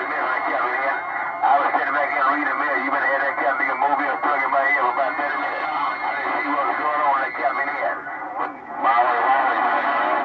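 Other stations' voices coming in over a President HR2510 radio and heard through its speaker: thin, narrow-band radio speech that goes on almost without pause, with a short break about eight seconds in.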